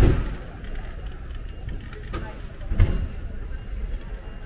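Town street ambience: voices of passers-by and a road vehicle going past, with two louder low rumbles, one at the start and one near the end.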